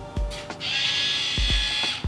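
Small handheld electric screwdriver motor spinning, a steady high-pitched whine that starts about half a second in and lasts about a second and a half, over background music.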